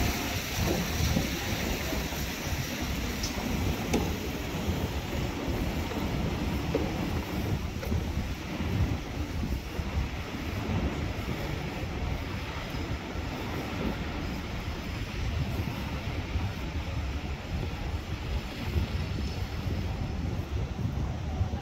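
Steady open-air city background noise with wind rumbling unevenly on the microphone.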